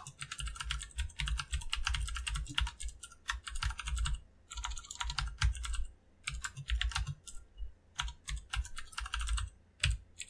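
Computer keyboard typing: quick runs of key clicks broken by short pauses.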